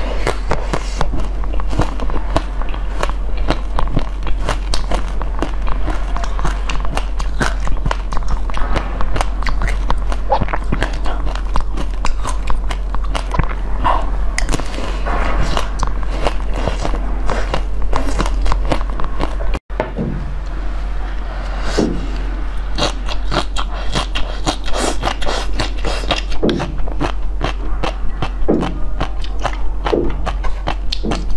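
Close-miked eating sounds: biting and chewing a hard-coated ice cream bar, its shell cracking in many small, crisp crunches. After a brief break about two-thirds through, more crisp mouth and chewing clicks follow, over a steady low hum.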